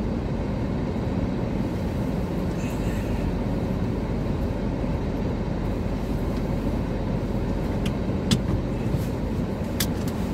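A car driving, heard from inside the cabin: a steady low rumble of engine and tyres on the road. A few short sharp clicks come near the end.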